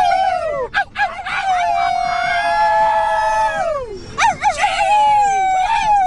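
People howling like wolves, several high voices overlapping in long wavering howls that slide down in pitch at the end. One howl is held for over two seconds in the middle, and shorter, wobbling howls follow.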